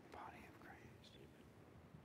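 Near silence, with a brief, faint murmur of a voice in the first second, too quiet to make out words.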